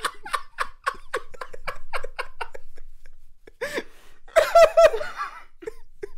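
People laughing: a quick run of short, breathy laugh pulses, then a few louder voiced "ha-ha" bursts a little past the middle.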